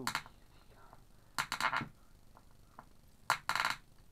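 A large screw being turned by hand into a wooden tabletop to bore through it: two short rasping bursts of the threads grinding and creaking in the wood, about a second and a half apart.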